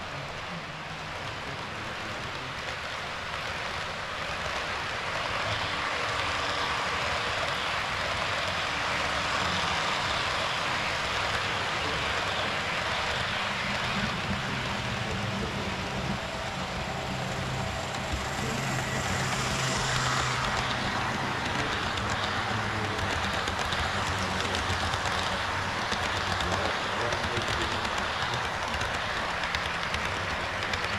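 HO-scale model trains running on the layout: a steady rolling rush of metal wheels on rail that grows louder over the first several seconds as a lit passenger train approaches and passes close by. A low hum joins about halfway through.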